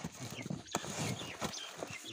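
Cardboard boxes knocked, pressed and shifted by hand: a run of irregular soft thumps and scrapes.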